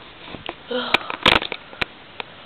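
Handling noise from a hand-held camera being moved: a few sharp clicks and knocks, with one short, louder rustling burst about halfway through and a brief vocal sound just before it.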